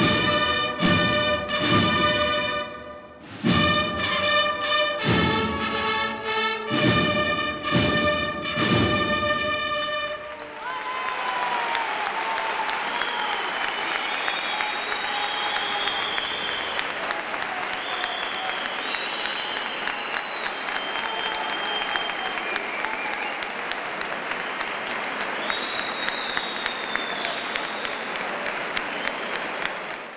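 A Holy Week cornetas y tambores band (bugles, brass and drums) plays the closing bars of a march: loud sustained brass chords punctuated by drum strokes, with a brief break about three seconds in, ending about ten seconds in. A large audience then applauds steadily, with some cheering on top.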